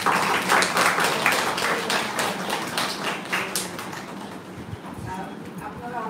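Audience applause, a dense patter of hand claps that is loudest at the start and dies away after about four seconds. Voices murmur near the end.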